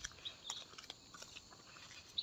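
Faint open-air ambience with a few short, high bird chirps and scattered small clicks.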